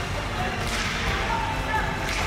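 Ice hockey rink sound: skates scraping the ice and spectators' voices, with one sharper scrape of sound about three-quarters of a second in.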